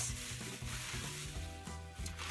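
Background music with a steady, stepping bass line, under a soft rustling hiss of items in plastic packaging being handled.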